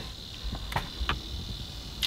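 A steady high-pitched insect trill over a low rumble inside a vehicle cab, with two faint clicks about a second in.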